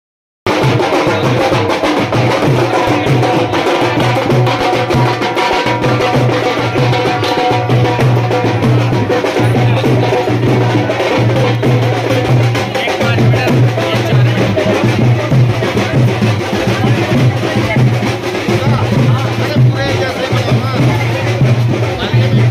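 A group of shoulder-slung drums beaten with sticks, playing a fast, loud, continuous rhythm with a deep drum pulsing underneath, with crowd voices mixed in. It starts abruptly about half a second in.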